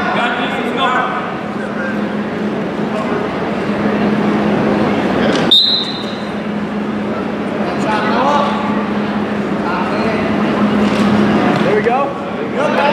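A referee's whistle gives one short, high blast about halfway through, starting wrestling from the referee's position. Around it, spectators and coaches shout in a gym, over a steady low hum.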